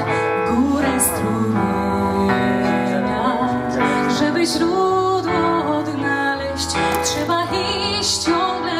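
A woman singing a slow song, accompanying herself on an electronic keyboard with a piano sound.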